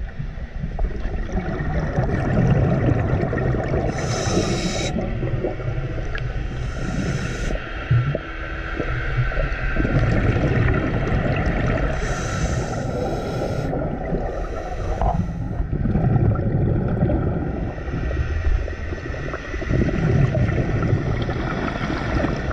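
Scuba diver breathing underwater through a regulator: a hiss with each inhale, three times, and the low rumble of exhaled bubbles in between.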